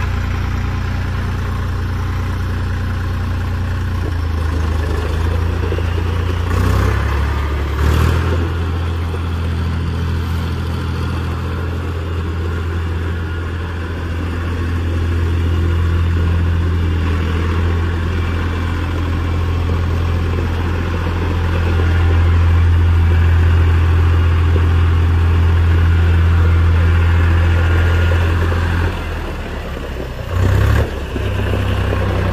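Deutz-Allis 6250 tractor's air-cooled Deutz diesel engine running steadily as the tractor drives with its loader. The engine note shifts a few seconds in, with two clunks at about seven and eight seconds. It grows louder in the last third and drops just before the end.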